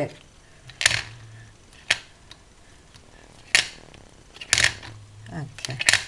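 A small plastic ink pad case being handled on a table: about five sharp, separate plastic clicks and taps, spaced a second or so apart. A brief murmur of voice comes just before the end.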